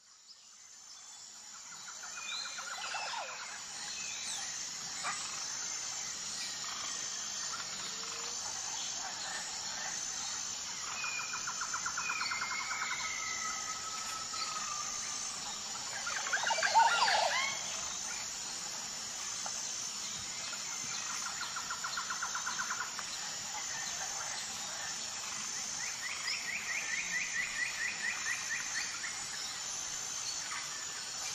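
Birdsong ambience fading in over the first couple of seconds: several birds trilling and whistling over a steady high-pitched hiss, with one louder swooping call about 17 seconds in.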